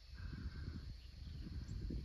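Faint outdoor ambience: a low, irregular rumble with a faint steady high hum over it.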